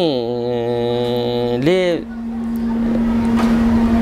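A man's voice drawing out a long, level hesitation vowel for about a second and a half, ending in a short syllable. A steady low hum runs underneath and is heard on its own for the last two seconds.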